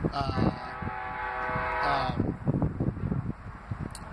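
A man's drawn-out "uhhh" of hesitation, held on one pitch for about two seconds before trailing off, followed by low rumbling wind noise on the microphone.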